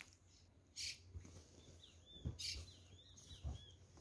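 Shorts being handled and picked up off a bed: two brief fabric swishes and a few soft knocks. A few faint high bird chirps sound in the background around the middle.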